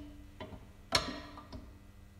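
Three sharp metallic clicks about half a second apart, the loudest about a second in with a brief faint ring, from metal standard weights being handled on a dead-weight pressure gauge tester.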